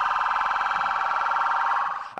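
Police car siren sounding a steady, rapid warble, ending near the end.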